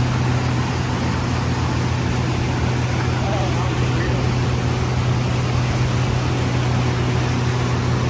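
Mercury outboard motor running steadily at cruising speed, a constant drone, over the rush of the boat's wake and wind.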